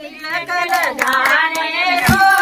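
Women singing a Pahadi gidda folk song, with hand clapping in time.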